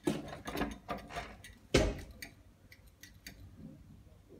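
Door letterbox flap clicking and rattling as an arm is worked through the slot: a quick run of sharp clicks, one louder thump a little under two seconds in, then a few lighter clicks that die away.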